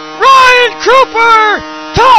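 A commentator's excited, high-pitched shouting in three short bursts, calling a goal just scored, over a faint steady electrical hum.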